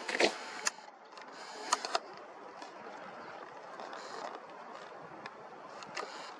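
Steady, even outdoor city background noise, with a few sharp clicks in the first two seconds.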